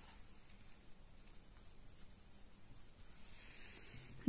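Faint scratching of a pencil writing a short word on a workbook page.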